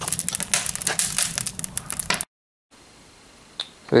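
Wood fire crackling in a cast-iron chiminea, with many quick sharp snaps and pops. About two seconds in it cuts off abruptly to faint room tone, with a single click shortly before the end.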